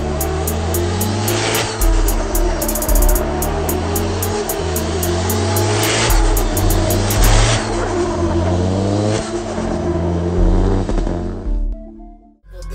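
Drift car engine revving up and down repeatedly with tyre screech, over background music. It fades out near the end.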